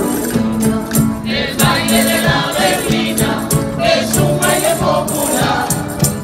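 Canarian folk group performing a berlina: several voices singing together over strummed guitars and other plucked string instruments, in a steady rhythm.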